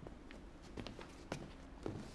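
A few faint footsteps, spaced about half a second apart, over quiet room tone.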